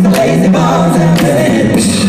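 Male a cappella group of six singing live into handheld microphones: a sung bass line holds the low notes under moving harmonies, with vocal percussion keeping a steady beat.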